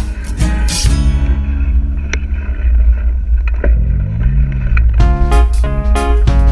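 Instrumental background music. The beat drops out for a few seconds in the middle, leaving held low notes, and comes back with sharp drum hits about five seconds in.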